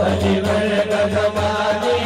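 A man singing a naat into a microphone, drawing out long held notes over a steady low drone, with a faint regular beat about four times a second.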